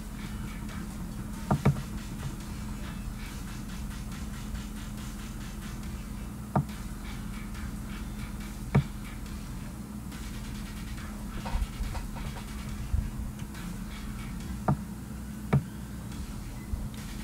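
Scattered sharp clicks, a few seconds apart and sometimes in quick pairs, over a steady low electrical hum.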